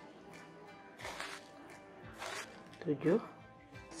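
Soft background music, with two short hissing pours about one and two seconds in as spoonfuls of granulated sugar are tipped onto a bowl of steamed mung beans.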